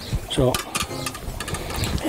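Light metal clicks and clinks of cookware being handled, a strainer set over a glass bowl, coming thick and fast from about half a second in.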